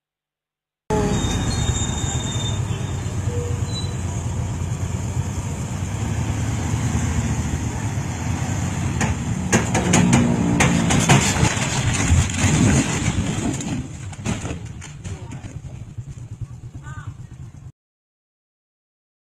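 Road vehicle driving noise as picked up by a dashcam: a steady engine and road rumble. It cuts in about a second in, has a cluster of sharp knocks around ten seconds in and a few more around fourteen to fifteen seconds, then carries on quieter until it cuts off just before the end.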